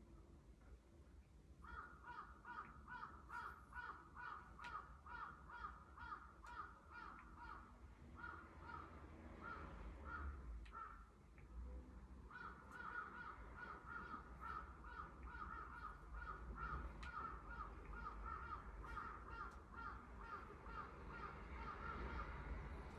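A bird calling in a fast run of repeated calls, about three a second, faint, breaking off for a second or two near the middle and then starting again.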